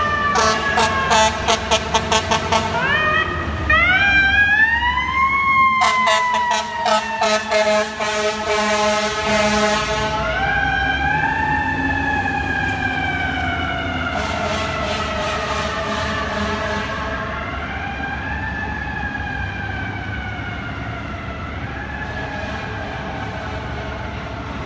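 Fire engine responding with its siren wailing up and down, while its air horn is sounded in a fast string of repeated blasts over roughly the first ten seconds. After that the horn stops and the siren keeps slowly rising and falling, growing fainter as the engine moves away.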